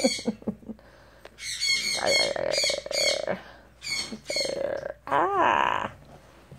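Yellow-naped Amazon parrot squawking in several rough bursts over a few seconds while being handled in play, with a short laugh from a person among them.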